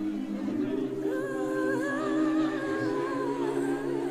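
Voices singing a cappella, humming a held chord; a higher voice with vibrato comes in above it about a second in.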